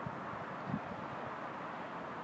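Steady outdoor background noise, an even low hiss, with a faint soft knock about three-quarters of a second in.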